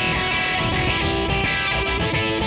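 Electric guitar playing a fast, busy rock part, as one continuous stretch of music.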